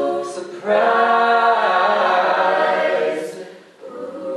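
Mixed-voice a cappella group singing in close harmony with no instruments. A phrase ends on a hissed 's', then a full chord is held for about two and a half seconds and fades away near the end.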